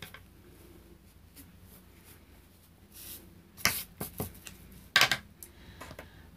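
Light handling on a craft table: a quiet first half, then a few sharp clicks and knocks with some light scuffling in the second half, as a plastic palette knife and paper are moved about.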